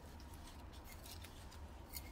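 Faint rustling and light scratchy ticks as gloved hands handle a potted rose begonia and its soil during repotting, with one sharper click near the end.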